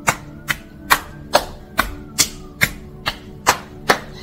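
Open hands slapping the outsides of the thighs in a steady rhythm, about two slaps a second, as a self-massage along the legs.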